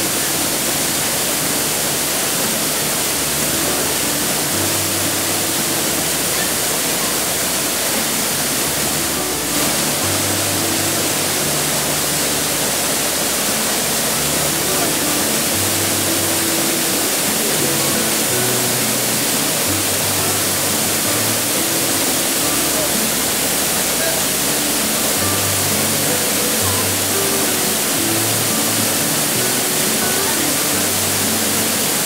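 A waterfall's steady roar of falling water, with background music of slow, sustained low notes over it.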